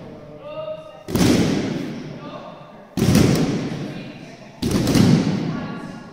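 A group of children doing backward breakfalls on judo mats, arms and backs slapping the mat together in a ragged volley three times, about every two seconds. Each volley echoes on and dies away in the large hall.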